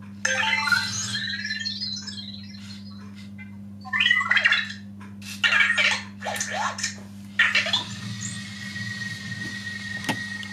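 Anki Vector robot's electronic voice: several bursts of warbling, gliding chirps and beeps as it responds to being called, followed by a steady high tone near the end.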